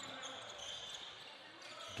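Faint basketball dribbling on a hardwood court, over the low ambience of an indoor gym.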